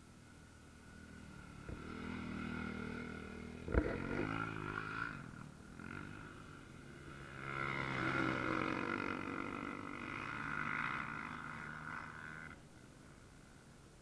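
Motocross dirt bike engines passing close by: one bike swells and fades in the first half, with a sharp knock about four seconds in, then a group of bikes swells and fades again in the second half.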